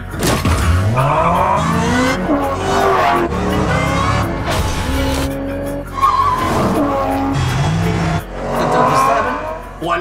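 Film trailer sound design: a car engine revving up and tyres squealing, over music. The engine's pitch climbs steeply about half a second in, and there are more rising revs near the end.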